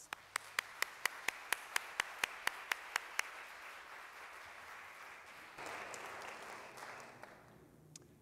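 Audience applauding, with one pair of hands clapping close to the microphone at about four claps a second for the first three seconds; the applause fades out near the end.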